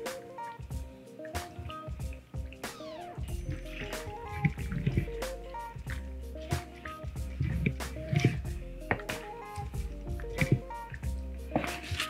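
Background music over wet squishing and dripping as cheesy shell-pasta mixture slides out of a bowl into a glass baking dish and is pushed in by hand.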